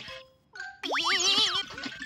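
Cartoon sound effects over children's background music: a short steady tone, then about a second in a quick upward swoop in pitch, followed by wavering, warbling notes and a swoop back down.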